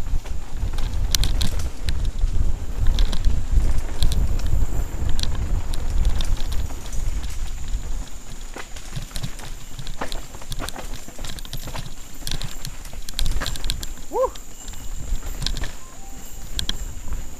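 Mountain bike descending a dirt forest trail at speed: wind buffeting the helmet-mounted microphone and tyres rumbling over the ground, with scattered clicks and rattles from the bike over roots and rocks. The rumble is heaviest in the first half, and a short rising squeak sounds near the end.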